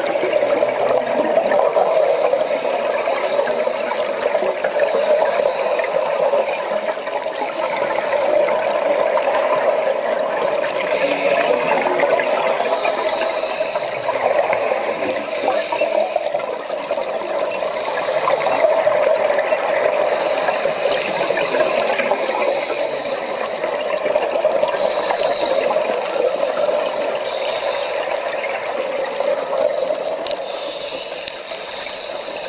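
Steady, muffled rush of moving water recorded underwater by the filming camera, with brief faint hisses coming and going.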